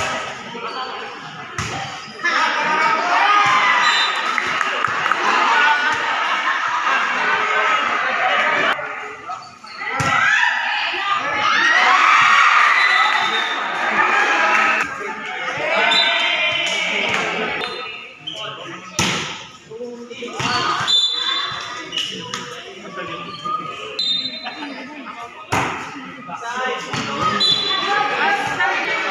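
Players and spectators shouting and cheering over one another, with sharp hits and thuds of a volleyball on a concrete court, echoing under a large roof.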